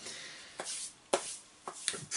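A few soft clicks and taps, about four in two seconds, from a hand handling the plastic body of a 1/8-scale RC monster truck.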